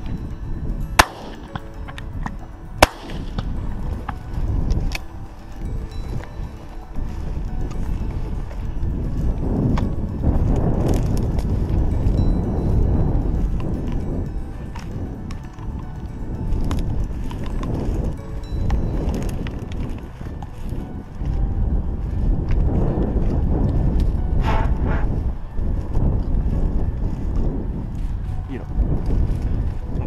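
Footsteps pushing through tall, dry grass and brush, rustling unevenly, with low wind rumble on the head-worn camera's microphone. Three sharp cracks sound in the first three seconds, the last one the loudest.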